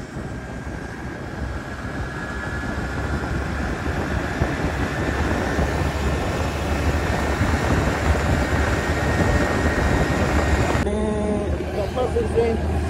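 Motorcycle riding at highway speed: wind rushing over the helmet microphone over the engine's drone, growing louder as the bike speeds up.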